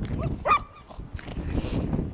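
A German shepherd puppy gives one short, sharp bark about half a second in, barking at the helper during protection training; a rustle follows near the end.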